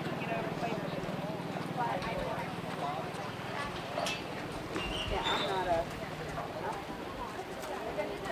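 People chatting in the background, with a horse's hoofbeats.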